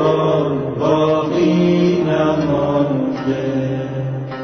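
A solo voice singing a slow, chant-like Persian mourning lament over a musical accompaniment. The voice breaks off about three seconds in, leaving the accompaniment.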